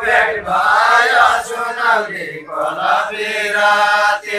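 A group of men singing a Deuda folk song in a slow, chant-like melody, without instruments.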